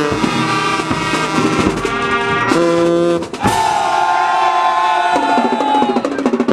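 High school marching band playing: brass section and drums together in a loud tune, with drum strokes cutting through. About halfway through, the brass holds one long note until near the end.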